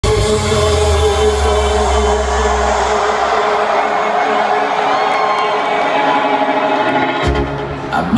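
Electronic dance music played loud over a concert hall's sound system, with a crowd cheering along. The heavy bass drops out about three seconds in and comes back near the end.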